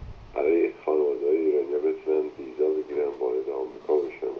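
A caller speaking over a telephone line.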